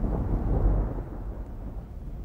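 A low, noisy rumble with no distinct tones, slowly fading, like a thunder-type sound effect.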